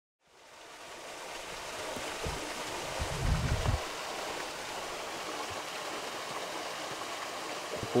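Steady rushing of rain and runoff water on a wet street, fading in at the start, with a brief low rumble about three seconds in.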